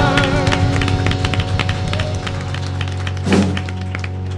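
A gospel choir and congregation clapping along, many sharp hand claps over a held keyboard chord, after the singing breaks off just after the start. A brief vocal shout comes a little after three seconds in.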